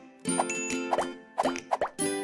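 Bright, bouncy outro jingle music with a run of quick rising pop sound effects, several in the second half.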